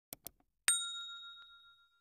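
Subscribe-animation sound effect: a quick double mouse click, then a single bright bell ding that rings out and fades within about a second.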